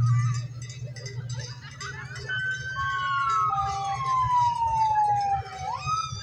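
A siren sounds from about two seconds in: one long tone falling slowly in pitch over several seconds, then sweeping back up near the end, over a low engine rumble and voices.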